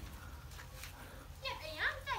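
Children's voices, talking and calling out, coming in about one and a half seconds in after a quiet start.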